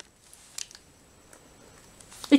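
Faint handling of a foil-lined ration pouch: a few small crinkles and clicks over quiet room tone.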